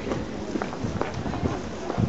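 Footsteps on a paved street among a walking crowd, with passers-by talking in the background.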